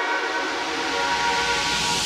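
Electronic dance music build-up: a held synth chord under a hissing noise sweep that swells steadily louder.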